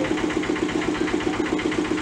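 Tofu-factory machinery running steadily: an engine-driven machine with an even, fast pulse about ten times a second.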